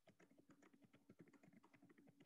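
Faint typing on a computer keyboard: a quick, uneven run of keystrokes, over a faint steady hum.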